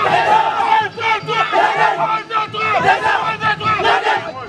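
A football team huddled together, chanting and shouting a team war cry in unison, in repeated loud bursts of many voices.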